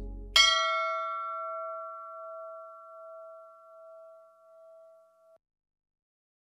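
A single strike of a metal temple bell: a clear ringing tone that fades with a slow wobble over about five seconds, then cuts off suddenly.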